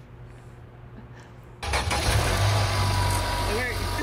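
A car engine with a dead battery, boosted by a portable jump starter clipped to it, starts suddenly about one and a half seconds in and keeps running with a steady low rumble.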